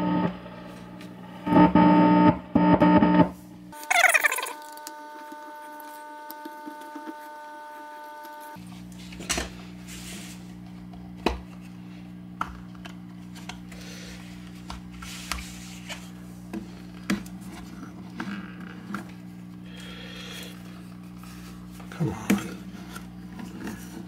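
Ampeg Reverborocket tube guitar amp humming steadily with mains hum, broken by scattered sharp clicks and knocks as the reverb footswitch box is handled. Near the start a few loud bursts come through, followed by a held tone lasting several seconds.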